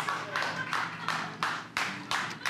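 Hands clapping in an even beat, about three claps a second.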